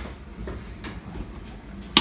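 Light kitchen clatter: a soft scrape a little under a second in, then a sharp clack at the very end.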